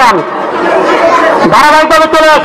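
A man speaking briefly at the start and again near the end, with the chatter of a crowd in a large hall between.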